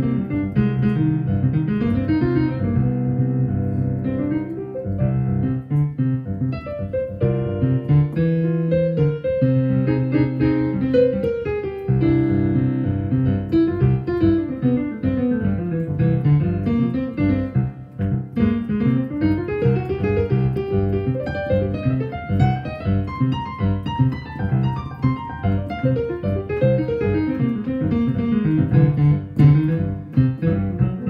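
Solo piano playing a rough sketch of an original composition. Held low chords change every second or two, then from about midway flowing arpeggios sweep down and back up.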